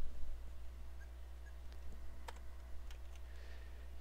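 A few faint, sparse clicks at the computer over a steady low electrical hum.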